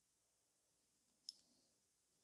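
Near silence: room tone, with a single faint, sharp click a little over a second in.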